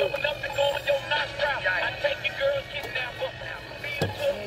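Coby CR-A67 clock radio playing a station through its small built-in speaker: a song with singing, thin and without deep bass.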